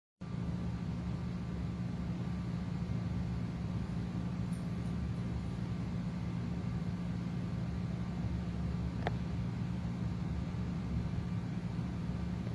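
A steady low hum over faint background noise, with a single brief click about nine seconds in.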